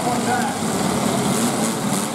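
Several demolition derby cars' engines running hard together as the cars push against one another, in a dense, steady mass of engine noise mixed with voices.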